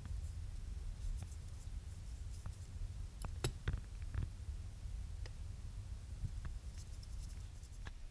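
A primer applicator dabbing and rubbing window-bonding primer onto an aluminium awning bracket: light scratching with a few small clicks about halfway through, over a steady low rumble.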